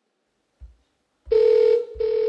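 Telephone ringback tone heard while a call is placed: one steady low buzzing ring pulse about a second in, then a short gap and a second pulse starting near the end, the double-ring pattern of a call ringing unanswered at the other end.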